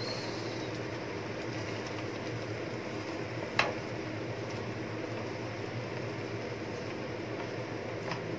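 Indian lettuce stir-frying in a frying pan on the stove: a steady rushing hiss, with one sharp tap of chopsticks against the pan about three and a half seconds in.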